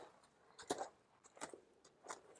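Near silence with two faint, brief footfalls on a gravel floor, under a second apart, from the horse and handler walking.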